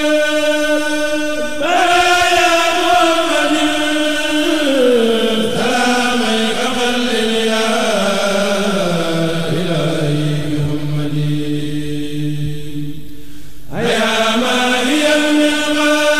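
A single unaccompanied voice chanting Arabic religious verses in long held notes that slide slowly down in pitch. A brief pause near the end comes before the next line begins.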